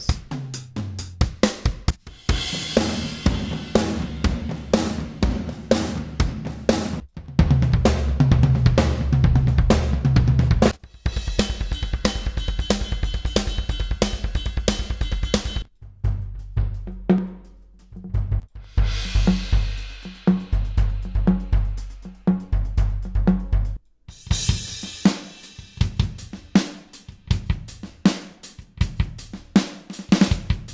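Sampled acoustic drum kit in Addictive Drums 2 playing preset drum grooves with kick, snare, hi-hat and cymbals. The groove and kit sound change every few seconds as presets are switched, one of them a softer kit played with mallets.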